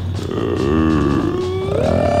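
Live rock band music: a pitched lead line bends up and down, then glides up near the end into a held, wavering note over a steady low hum.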